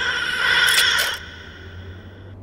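Comic suction sound effect from a white tube-nozzle gadget sucking a metal house number off a door: a loud steady whooshing hum with a pitched ring for about a second, then dropping to a quieter tone that fades away.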